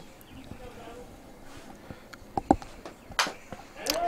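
Softball bat fouling off a pitch: a few short, sharp knocks about two and a half to three seconds in, over faint background voices.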